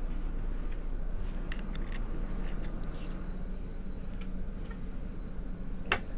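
Steady low hum in a tour bus cabin, with a few faint clicks and taps and one sharper click near the end.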